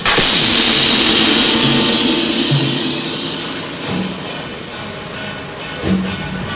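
Procession percussion: one loud cymbal crash right at the start that rings and fades away over about three seconds, with a few soft low drum beats underneath.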